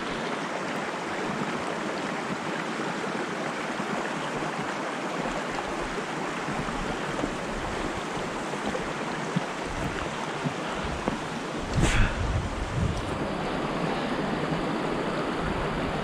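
Shallow mountain stream rushing steadily over rocks. About three quarters of the way through there is a brief muffled thump.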